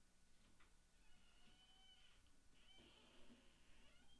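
Near silence in an open stadium, with faint, drawn-out high-pitched tones about a second in and again near the end.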